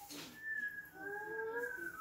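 A pet cat giving one long drawn-out meow, starting about half a second in.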